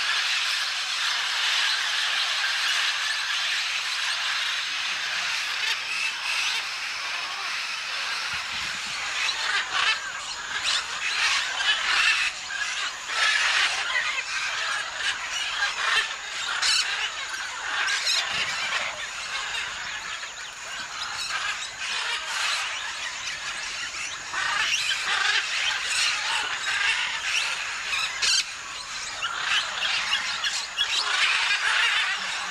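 A large mixed flock of parrots, small parakeets and macaws, calling all at once in a continuous shrill screeching chorus, with sharper individual squawks standing out more often in the second half.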